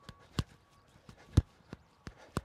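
Sneakered feet striking artificial turf in an A-switch sprint drill, a few sharp footfalls, the loudest near the middle.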